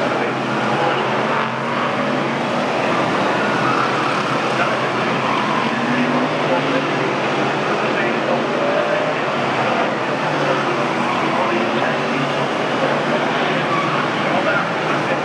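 A pack of stock car F1 race cars running their V8 engines around an oval track, a steady, continuous engine noise, with indistinct voices mixed in.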